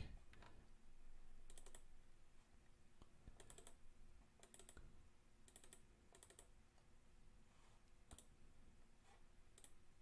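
Faint computer mouse clicks, several in quick pairs as double-clicks, spaced a second or two apart over near silence.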